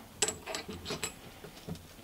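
A few faint metal clicks and light taps as a rusty wheel hub bearing and small steel parts are handled against a steel plate. The sharpest click comes just after the start, and the rest are scattered through the first second or so.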